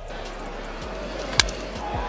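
Ballpark crowd noise on a baseball broadcast, with one sharp crack of a bat hitting the ball about one and a half seconds in.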